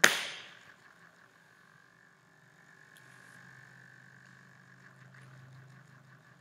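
A sharp click at the very start that fades within about half a second, followed by near silence with a faint steady hum.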